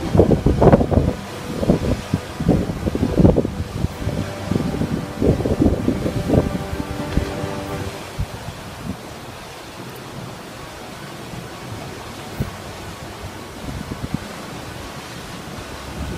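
Wind buffeting the microphone over the rush of the sea, in uneven gusts through the first half and then settling to a steadier, quieter rush.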